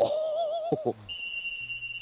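A wavering, whistle-like tone with a quick regular warble for about a second, then a steady high-pitched tone for the rest.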